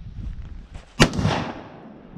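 A single loud rifle shot from a scoped rifle, about a second in, its report trailing away over about half a second.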